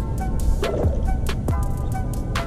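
Background music with a steady electronic beat: regular kick-drum thumps and sharp hits under short repeated synth notes.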